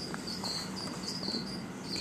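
A cricket chirping steadily, short high chirps about three a second.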